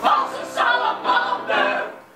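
A small vocal ensemble singing together on stage in short phrases, the sound falling away near the end.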